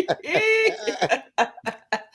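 A woman's laughter: one high, drawn-out laughing cry, then a few short coughs as the laugh trails off.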